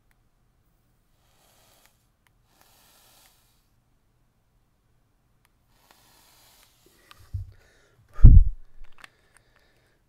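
Faint airy hiss of drawing on a box-mod vape and blowing out the vapor. Near the end comes a heavy low thump, the loudest sound, with a smaller thump just before it and a few light clicks after.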